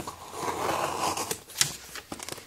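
Box cutter blade slicing through the packing tape along the seam of a cardboard box: a rasping scrape lasting about a second, followed by a couple of sharp clicks.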